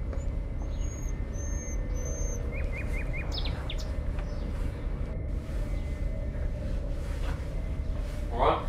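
Outdoor garden ambience: a steady low background rumble with small birds chirping, three short high chirps in the first couple of seconds, then a quick run of four notes about three seconds in and a few more chirps after it.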